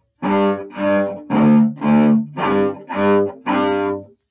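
Cello bowed on open strings: seven separate detached notes in the pattern G, G, D, D, G, G, G, the closing figure of the bass part played on the cello's open G and D strings.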